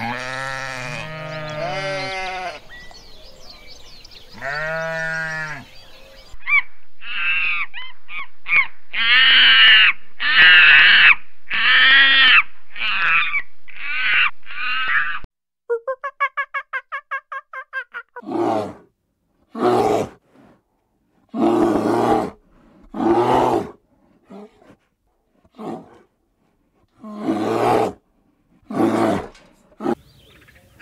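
Sheep bleating several times in the opening seconds, followed by a long run of loud animal calls from other animals: a string of calls, then a fast chattering trill, then separate calls about every second and a half.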